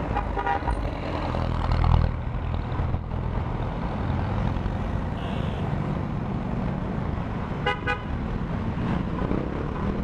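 Motorcycle engine running in slow city traffic, with a vehicle horn tooting briefly just after the start and twice quickly near the end.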